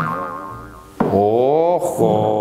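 Two wobbly, boing-like comic sound effects with a wavering pitch. The first starts sharply at the start and fades over about a second; the second comes in about a second in and holds on.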